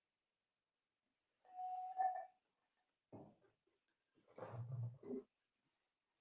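Mostly quiet, with faint mouth and breath sounds of a person sipping a drink from a glass: one about a second and a half in, a brief one near three seconds, and another towards the end.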